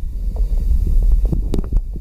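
Shallow creek water being fanned by hand, sloshing with a steady low rumble. A few small sharp clicks, like stones knocking, come about one and a half seconds in.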